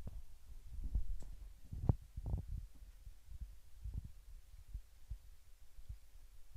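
Faint, irregular low thumps and bumps, with a few light clicks about one and two seconds in.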